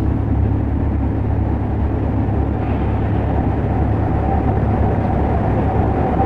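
A steady, loud low rumble with no clear rhythm or changes in pitch, a soundtrack drone or rumbling effect.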